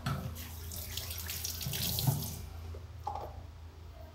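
Kitchen tap running into a drinking glass for about two seconds, then shut off.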